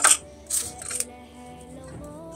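Metal spoon and knife scraping and clinking against a steel plate in three short bursts, the first right at the start and the loudest, the others about half a second and a second in, over steady background music.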